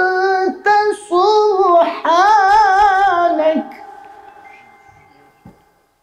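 A male Qur'an reciter's voice in melodic recitation through a microphone, holding long, high, ornamented notes with wavering pitch. The phrase ends about three and a half seconds in and dies away in a long echo, with a faint click just before it goes silent.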